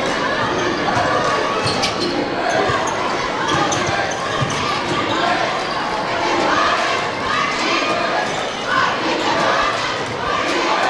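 Basketball being dribbled on a hardwood gym floor, repeated bounces in a large hall, over constant crowd voices from the bleachers.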